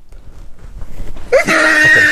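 Fabric rustling as the flap of a nylon holdall is pulled open, then a loud, strained voice saying "Okay" near the end.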